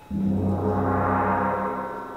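Large concert gong struck once just after the start: a low steady hum holds while a shimmer of higher overtones swells up and then fades.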